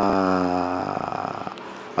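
A man's voice holding one long hesitation vowel, a drawn-out "eh" that sinks slightly in pitch and fades out about a second in, leaving quiet room tone.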